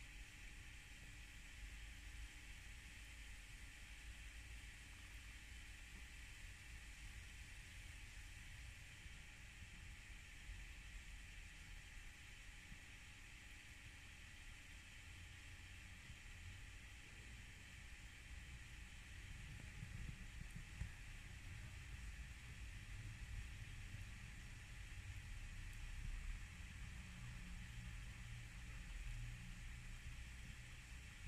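Faint steady outdoor background: a constant hiss under a low rumble, and the rumble grows a little louder in the second half.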